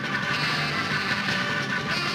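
Jazz-rock band playing at full tilt, with drum kit, organ and electric guitar.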